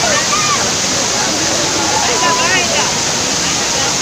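Waterfall pouring down a rock wall onto a crowd of bathers, a loud steady rush of water, with many people shouting and chattering over it at once.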